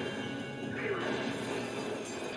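Soundtrack of an animated action episode: dramatic score with crashing sound effects, and a brief voice about a second in.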